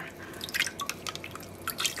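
Tablespoons of white vinegar tipped into a large steel pot of water: a few faint splashes and drips.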